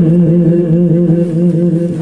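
A voice singing devotional verse in long, drawn-out notes that waver gently, with no break across the two seconds.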